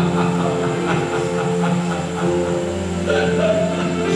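Slow worship song sung by a man into a microphone through a PA, with other voices joining on long held notes.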